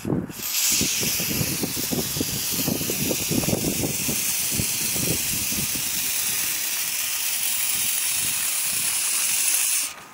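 WD-40 Specialist silicone lubricant aerosol spraying through its straw in one long continuous burst, a steady hiss that starts just after the beginning and cuts off abruptly near the end. The silicone is being sprayed into a car door's power-window channel to free up slow-moving windows.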